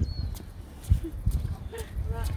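Footsteps on a paved path with irregular low knocks and a low rumble, faint voices of passers-by, and a short high chirp just after the start.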